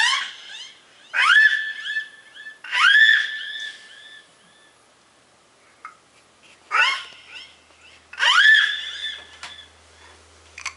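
An 11-month-old baby squealing high "ah" calls into a microphone, five times. Each call slides sharply up and then holds, and each is followed by fading repeats from a delay (echo) effect.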